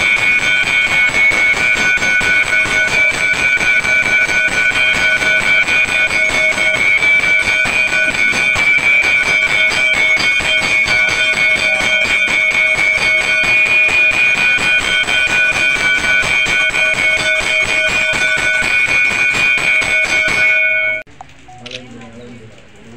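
Hanging temple bell rung rapidly and without a break, its clapper striking many times a second so the ringing tones never die away; it stops abruptly near the end.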